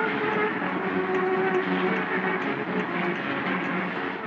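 Brass band of trumpets, cornets and tubas playing a tune in held notes, several sounding at once.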